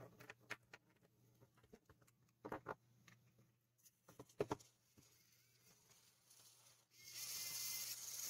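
Faint scattered clicks of handling, then about seven seconds in a cheap micro RC servo's small motor and plastic gear train start running with a steady whir.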